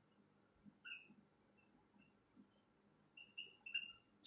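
Near silence with a few faint, short high squeaks from writing, more of them near the end.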